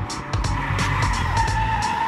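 Tyres squealing as a car drifts sideways through a corner, one sustained screech that starts about half a second in, heard over background music with a steady beat.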